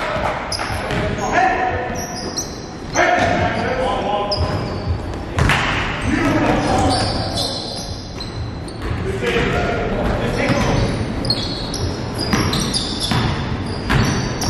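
Live basketball game sound in a gym: the ball bouncing on the hardwood floor, sneakers squeaking in short high chirps, and players calling out, all echoing in the hall.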